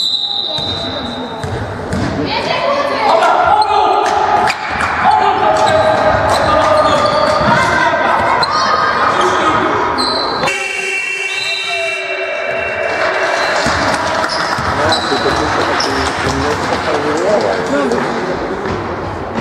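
Basketball bouncing on a wooden sports-hall floor during a youth game, with players and spectators calling out, echoing in the hall.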